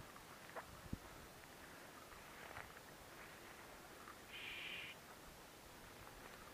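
Near silence with faint rustling and a few small clicks and one soft thump. A short, steady high-pitched tone lasts about half a second near the end.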